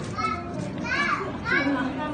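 High-pitched children's voices calling out three times, each call rising and falling in pitch, over a steady background of crowd chatter.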